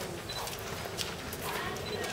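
Crowd of onlookers talking, with a few sharp clicks scattered through, one of them about a second in.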